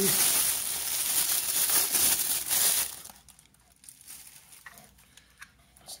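Clear plastic wrapping crinkling as a camera body is pulled out of its bag, for about three seconds, then a few faint handling clicks.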